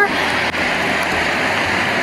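Steady rushing of a rocky mountain river, the Poudre, as an even hiss of moving water.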